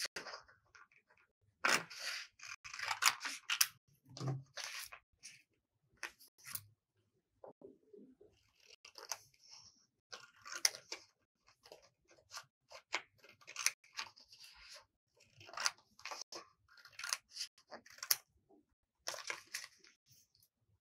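Scissors cutting through a sheet of red craft paper: runs of crisp snips and paper crackle come in bursts with short pauses between them as the paper is turned and repositioned.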